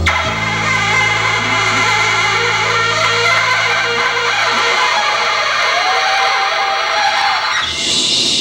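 A live band's closing chord is struck with a hit at the start and left ringing, with electric guitar and bass sustaining and slowly fading. Applause breaks out near the end.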